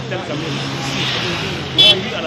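Busy street sound: voices talking over a running motor vehicle engine. A short, loud, high-pitched sound cuts in near the end.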